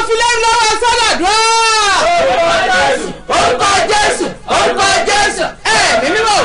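A woman praying aloud in a loud, impassioned voice, with drawn-out shouted phrases. One long cry rises and falls about a second in, followed by shorter, choppier bursts.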